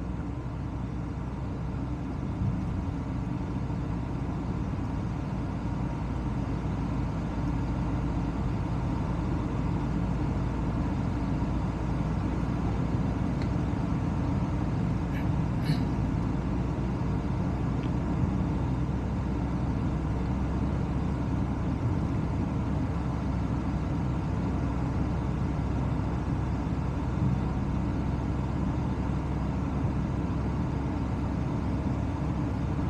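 Steady low rumble of a car driving along a suburban road: tyre and wind noise picked up by a camera mounted outside on the car's roof.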